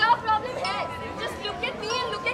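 Several voices talking over one another, with a steady high tone held underneath.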